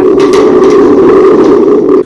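Stage thunder for a children's play: a loud, steady rumbling roar that stops abruptly.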